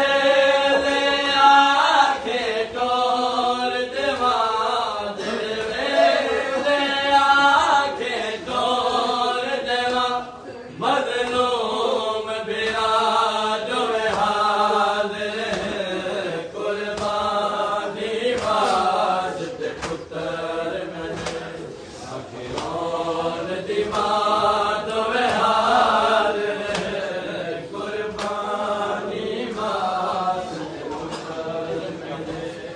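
A group of men chanting a noha, a Shia mourning lament, in repeated sung phrases.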